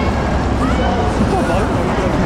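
A crowd of fans shouting and calling over one another, many voices at once, over a steady low rumble.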